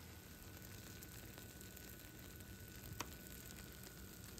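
Faint sizzling from a cheesy tater tot casserole fresh out of the oven, with a few small ticks and one click about three seconds in.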